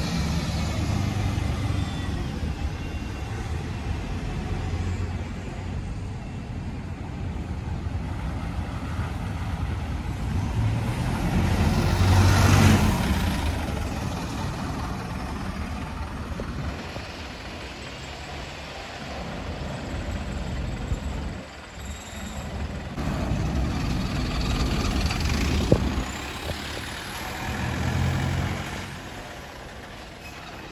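Buses running and moving in street traffic with a continuous low engine rumble. It swells loudest about twelve seconds in, as a bus goes by close, and there is a single sharp click late on.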